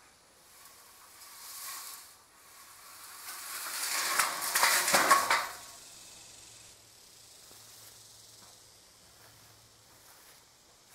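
A corrugated culvert pipe being lowered into a dirt trench, its end scraping and rattling against soil and grass. The scrape swells to its loudest with a few sharp clatters about four to five seconds in, then dies away.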